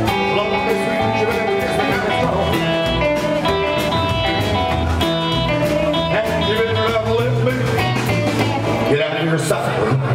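Live rockabilly band playing: strummed acoustic guitar, electric guitar and upright double bass, loud and steady throughout.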